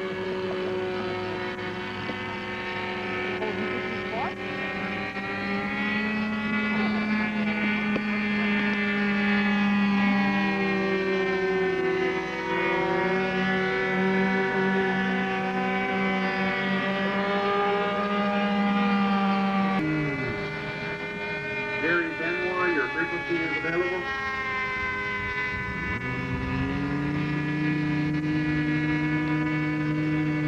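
Radio-controlled model airplane engines running at high speed, with their pitch rising and falling slowly as the planes fly, and at times more than one engine heard together. The sound changes abruptly about two-thirds through, and near the end a steadier engine tone sets in.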